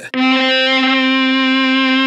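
Electric guitar string driven by an EBow in its standard mode, sounding one steady sustained note with many overtones. It swells in just after the start with no pick attack.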